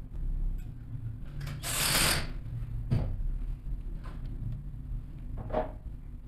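Cordless drill-driver running in short bursts as it drives the screw terminals on a contactor, with a louder noisy burst about two seconds in and a few sharp clicks.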